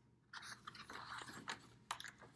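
Faint rustling and scraping of a picture book's page being turned, with a few light clicks.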